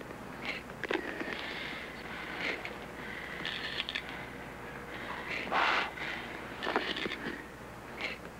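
Low background noise broken by scattered short rustles and scrapes and a few brief hissing bursts, the loudest a little past the middle.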